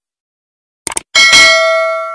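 Subscribe-button animation sound effect: a quick double mouse click just before a second in, then a bright bell ding that rings on and fades.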